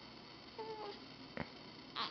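A baby's brief, faint squeak, about half a second in, followed by a small click.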